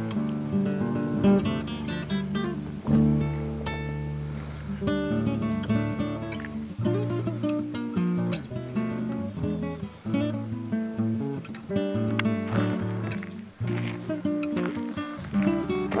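Background music: acoustic guitar picking a melody, with notes changing every half second or so.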